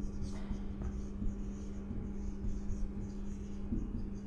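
Marker pen writing on a whiteboard: short, uneven scratching strokes of the tip as letters are written, over a steady low hum.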